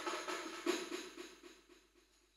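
Hand percussion keeping a steady beat of drum and jingle strikes at the close of a group devotional chant. The beat fades away toward the end.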